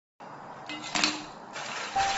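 Pieces of textured soy protein dropping into a glazed ceramic bowl, with two light knocks about a second in. A soft, steady hiss of water being poured in follows near the end.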